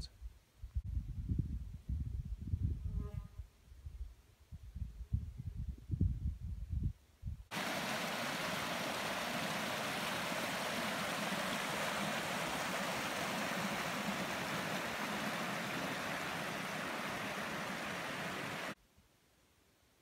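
Wind buffeting the microphone in irregular low gusts, then a rocky mountain stream of meltwater rushing steadily over boulders; the water sound starts and stops abruptly, about seven seconds in and a second before the end.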